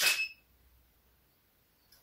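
Sharp click of a camera shutter firing a studio flash, with a short high beep ringing over it and fading within half a second.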